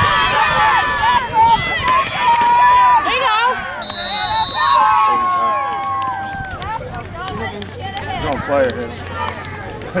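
Football spectators on the sideline shouting and cheering over one another during a play. A referee's whistle is blown once for about a second, around four seconds in, and the voices die down after it.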